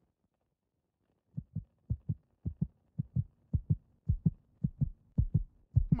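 Heartbeat sound effect: a low double thump, lub-dub, repeating a little under twice a second, starting about a second and a half in after near silence. It marks a character's nervous panic.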